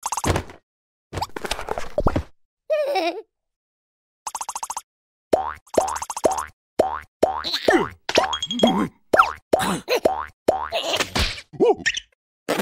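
Cartoon sound effects: springy boing-like plops, each rising in pitch, repeating about two to three times a second from about five seconds in, for a larva character skipping with a jump rope. Before them come a few short swishes and one brief wavering cartoon voice.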